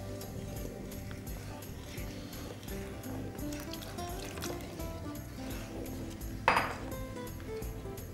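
Background music with a steady beat over faint pouring of liquid from a glass jar into a pot while a wooden spatula stirs. A brief splash about six and a half seconds in is the loudest sound.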